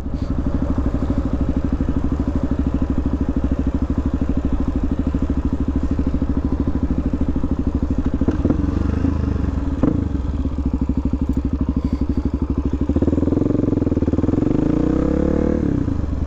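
2016 Suzuki DRZ400SM's single-cylinder four-stroke engine running at low speed while riding, a steady pulsing note. A couple of knocks come around the middle, and the engine pitch rises and then falls near the end.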